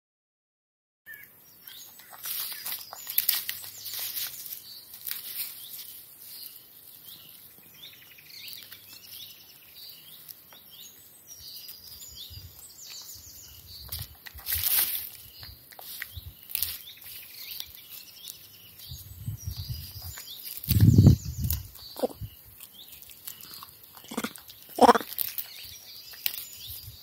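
A juvenile vervet monkey plucking and chewing fresh grass, with scattered rustling and crunching, while small birds chirp throughout. A single dull low thump comes about four-fifths of the way in, and a couple of short calls sound near the end.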